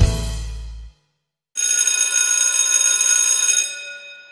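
The last chord of a song fades out in the first second; after a short silence a ringing, bell-like chime sounds, holds for about two seconds, then dies away.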